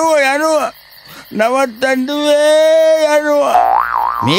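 A person's voice making drawn-out, wavering 'meee' cries: a short warbling one at the start, then a long held one from about two seconds in, ending in a pitch glide.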